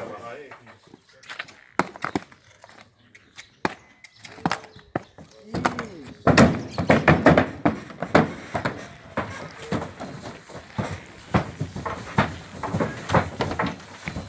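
Horse hooves knocking and clattering on a horse trailer's ramp and floor as a horse is led up and into the trailer, with a flurry of heavier knocks from about five and a half seconds in.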